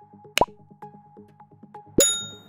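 Light electronic music of soft plucked notes, with a quick pop sound effect about half a second in and a bright ringing ding at the very end: the click and bell effects of a subscribe-button animation.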